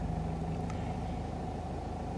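Steady low background hum and rumble, with a faint low tone that fades out about a second and a half in.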